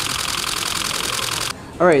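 Nikon DSLR shutter firing a continuous high-speed burst, a rapid even run of clicks that stops abruptly about one and a half seconds in.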